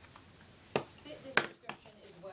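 Three sharp knocks from something being handled, the loudest a little past halfway, with a faint voice between them. There is no vacuum motor running.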